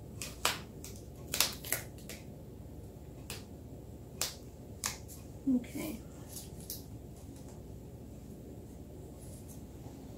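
Irregular sharp clicks and taps from gloved hands fitting a small foam-and-plastic door piece onto a cake mailbox, about a dozen in the first seven seconds, then quieter.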